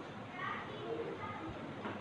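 Chalk writing on a blackboard: faint scraping strokes and a light tap near the end, under faint voices in the background.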